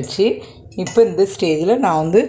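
A woman talking, with a light clink of a small steel cup against a glass mixing bowl.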